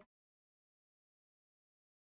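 Near silence: the sound track is blank.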